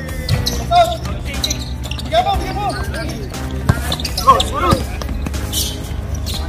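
A basketball bouncing on a concrete court with sharp thuds, the loudest about a second in and again near four seconds, while players shout. Background music runs underneath.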